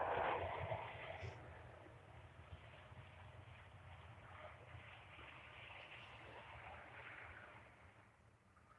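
Faint, steady background hiss over a low rumble, with a soft rustle in the first second.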